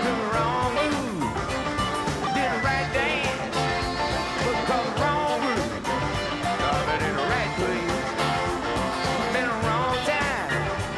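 Live rock band playing an instrumental stretch: electric guitar lines with bent, wavering notes over bass and a steady drum beat.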